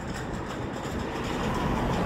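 Steady rushing noise of road traffic, slowly growing louder as a vehicle approaches.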